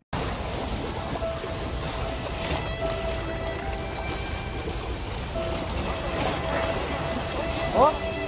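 Wind rumbling on the microphone over the wash of the sea, with faint steady held tones coming and going in the background. A voice starts near the end.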